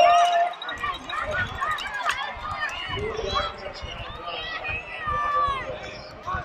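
Several voices shouting and calling out over one another, unintelligible, with one long held shout at the start.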